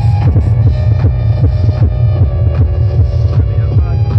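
Loud freetekno music on a sound system: a heavy, throbbing bass with quick falling synth sweeps repeating over it.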